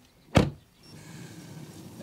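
A car door shuts with a single sharp thud, followed by the low, steady hum of the moving car heard from inside the cabin.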